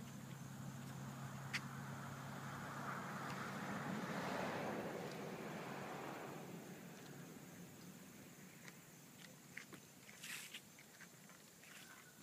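Faint noise of a passing car, swelling to a peak about four seconds in and fading away by about seven seconds, with a few light clicks afterwards.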